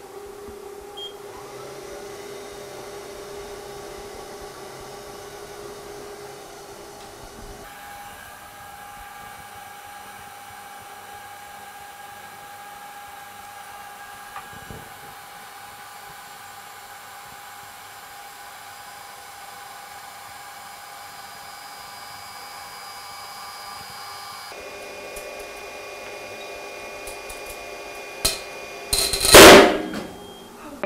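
Lloyd Instruments materials testing machine's crosshead drive whining steadily as it pulls seat-belt webbing; the whine steps up in pitch about eight seconds in and drops back down near the end. Just before the end the webbing breaks under load with a very loud bang, preceded by a sharp click.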